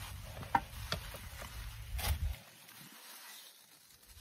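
Soil and hosta leaves rustling as gloved hands set a hosta clump into a planting hole, with a few sharp ticks about half a second, one second and two seconds in. A low rumble runs under it and stops a little past two seconds in.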